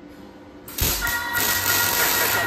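Electric arc welder striking an arc about two-thirds of a second in, then crackling and hissing steadily as the weld is laid on the steel pipe guard.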